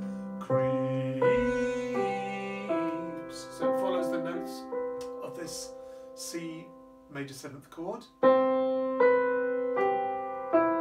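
Nord Stage 3 stage keyboard playing a piano sound: a slow run of chords, each struck and left to fade, about one a second. About seven seconds in the playing pauses briefly, then resumes with a louder chord.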